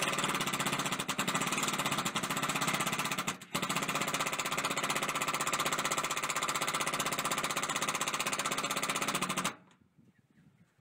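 Cordless DeWalt impact driver hammering galvanized roofing screws through a metal flashing plate into a shipping container's steel roof: a loud, rapid, continuous rattle of impacts. It breaks off briefly about three and a half seconds in, then runs on and stops near the end.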